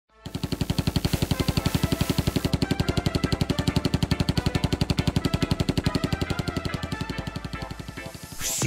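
Machine gun firing in a long, evenly spaced burst, about ten shots a second, over a musical intro of held chords; the firing grows quieter near the end.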